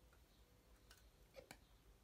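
Near silence: quiet room tone with a few faint, sharp clicks in the second half.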